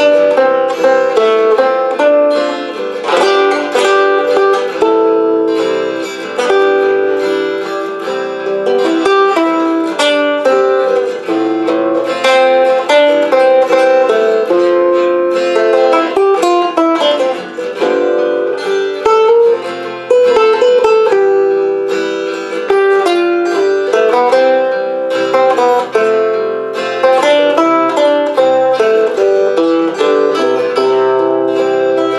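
Acoustic guitar fingerpicked, playing a steady run of melody notes over chords as an instrumental ballad.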